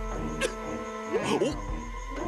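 Cartoon soundtrack music, with a sharp click about half a second in and a brief, quickly gliding vocal sound from a cartoon character near the middle.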